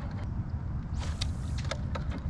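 Spinning fishing reel being cranked to retrieve a skip-cast lure: scattered short clicks, with a brief hiss about a second in, over a low steady rumble.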